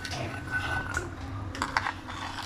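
Light clicking and tapping of kitchen prep as chopped onion, garlic and ginger are gathered off a tiled counter into a steel bowl, with a quick cluster of clicks near the end.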